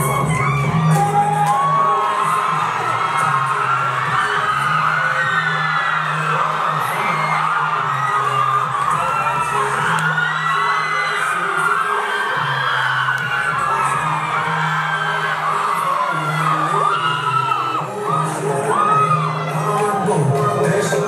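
Music with a steady bass line playing over loudspeakers, with an audience cheering, shouting and whooping over it.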